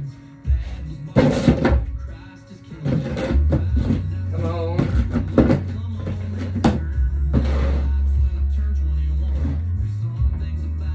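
A country song playing on a radio, with singing and guitar over a steady bass line, and a few sharp knocks.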